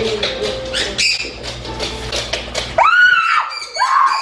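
A woman's shrill scream of fright about three seconds in, followed by a second shorter shriek near the end. Before them there is a low hum with scattered knocks and clatter.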